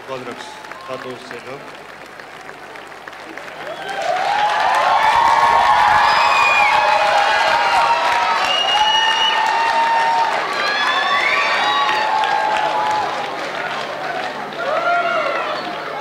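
Studio audience applauding and cheering, swelling suddenly about four seconds in and easing off near the end.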